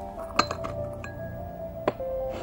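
Soft background music holding a steady note, over two clinks of china teaware, a tea bowl knocking against the teapot or saucer, about half a second in and again, louder, near the end.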